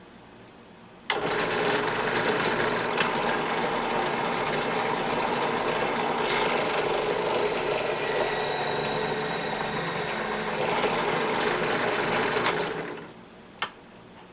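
Benchtop drill press starting abruptly and running steadily as it spins a roll-crimp finishing tool down onto a shotgun hull clamped in a vise, crimping the shell's mouth. Near the end the motor is switched off and winds down, followed by a single click.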